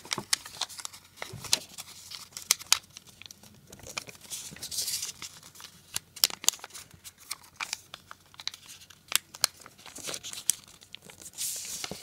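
A small square of paper being folded by hand as its corners are brought in and creased: repeated sharp crackles of the paper, with longer hissing rubs about five seconds in and near the end as fingers press the folds flat.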